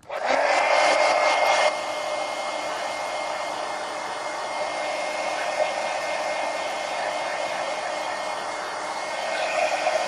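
Heat gun blowing hot air to dry a wet acrylic paint wash on a coloring book page: a steady rush of air with a faint steady whine. It is louder for the first second and a half or so, then settles a little quieter.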